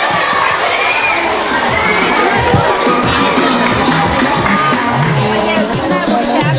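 A crowd of middle-school children shouting and cheering in an auditorium, with a couple of high shrieks early on. Music with a steady beat comes in under the crowd about halfway through.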